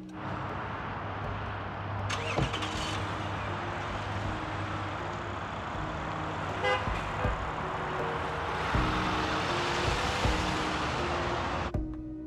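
Street traffic noise, a car's tyre and engine sound that grows louder over the last few seconds and then cuts off suddenly, with a short car-horn toot around the middle. Quiet background music with sustained low notes plays underneath.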